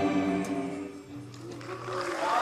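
The final chord of a rock band with a high school string orchestra dying away, a low note held on briefly, as audience applause begins to rise near the end.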